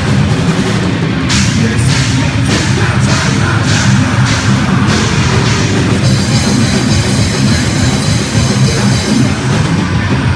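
Live heavy metal band playing loud, with electric guitars, bass and drum kit. Regular sharp accents come about every half second through the first half.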